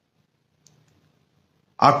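A pause in a man's speech: near silence with one faint click about two-thirds of a second in, then his voice starts again near the end.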